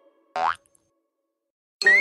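Cartoon spring 'boing' sound effects, dubbed to the hops of an animated desk lamp. A short boing with a rising pitch comes about a third of a second in, then a gap of silence, then a louder, longer boing with several rising sweeps near the end.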